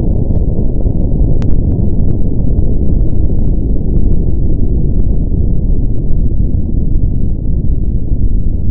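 Loud, steady low rumble with no pitch, with faint scattered crackles above it: a rumbling sound effect.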